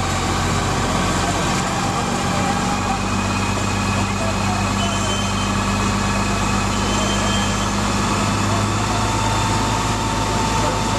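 A BMC fire truck's diesel engine runs steadily to drive its water pump, with the hiss of a hose jet spraying over the top.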